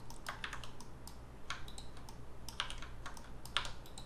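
Computer keyboard keys being tapped in short, irregular clusters of quiet clicks, with a mouse button click among them, as Blender shortcuts are worked.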